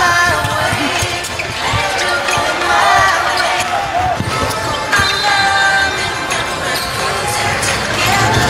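Basketball bouncing repeatedly on an indoor hardwood court during game play, with music and voices mixed in.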